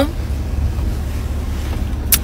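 Steady low rumble of a car's interior noise, heard from inside the cabin.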